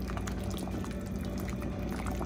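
Tamarind chutney boiling in a stainless steel pot, a steady bubbling with many small pops as a spatula stirs it.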